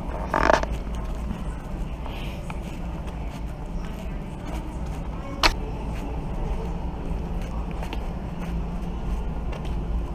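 A steady low rumble with scattered light clicks, a short louder burst just under a second in, and one sharp knock about five and a half seconds in.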